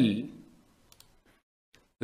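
A man's drawn-out spoken syllable fades out, then a few faint computer-mouse clicks follow: two close together about a second in and one more near the end.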